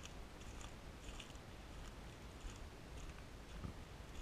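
Faint footsteps crunching on dry leaves and sandy ground, about two steps a second.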